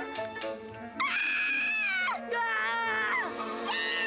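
A high-pitched cartoon voice screaming: a rising yelp, then two long held cries of about a second each, the second wavering and dropping away, over background music.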